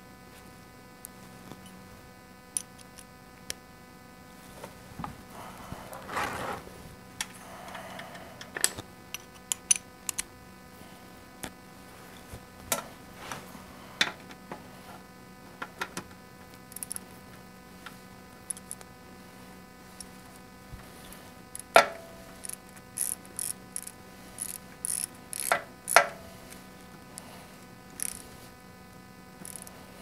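Scattered light clicks, taps and scrapes of hand tools and small engine parts being handled, with a brief rubbing sound about six seconds in, over a steady electrical hum.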